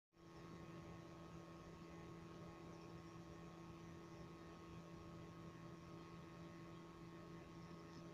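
Near silence: a faint steady hum with low hiss.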